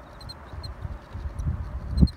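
Wind buffeting a phone microphone outdoors, a low uneven rumble that swells about one and a half seconds in, with a few faint short high chirps over it.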